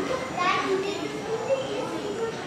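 Several children talking and calling out at once, their high voices overlapping into chatter with no clear words.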